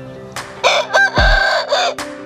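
A gamecock rooster crowing once, a rough, loud crow that starts about half a second in and lasts just over a second.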